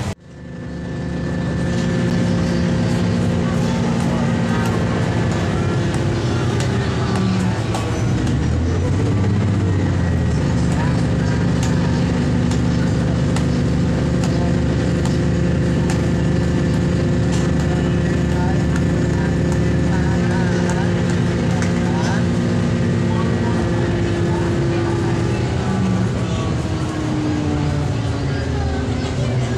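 Cummins NT855 six-cylinder diesel engine of an MCW 302 diesel railcar droning steadily under way, heard from inside the passenger cabin. It fades in at the start, its note wavers around a third of the way in, and it falls near the end.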